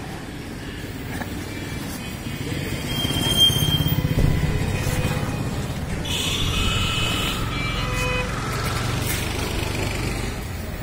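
Street traffic: a small motor vehicle's engine passes close by, building to its loudest about three to four seconds in. A horn sounds between about six and eight seconds in.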